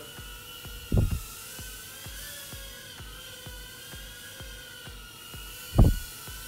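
Beta65 tiny-whoop FPV quadcopter flying indoors, its motors and propellers giving a steady high whine whose pitch wavers slightly with throttle. Background music with a steady beat runs underneath, and two loud thumps come about a second in and near the end.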